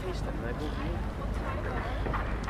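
Passers-by talking nearby over a steady low rumble of city street noise.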